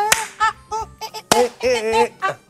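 A voice singing a short repeated phrase, punctuated by two sharp hand claps, one right at the start and another about a second and a quarter in.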